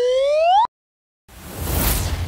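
Intro sound effects: an electronic beep that glides upward in pitch and cuts off about two-thirds of a second in, then after a short gap a rushing whoosh that swells up near the end.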